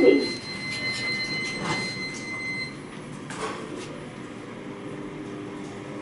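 Hitachi machine-room-less elevator car travelling down: a steady running hum with a thin high steady tone that stops a little over halfway through, and a couple of soft knocks.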